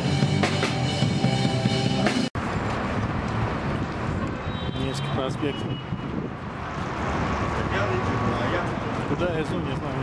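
Street band playing rock music on drums and electric guitar, which stops abruptly about two seconds in. Then steady city street noise: traffic going by and people talking.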